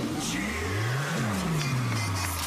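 Sound effect in a competitive cheer routine's music mix: a deep tone that rises for about a second and then falls again, over a high sweep that slides downward.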